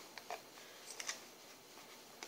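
A few faint clicks of a metal spoon against a plastic container while stirring a runny honey and lemon mixture, mostly in the first second.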